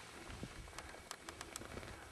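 Faint low rumble of wind buffeting the microphone, with scattered light clicks.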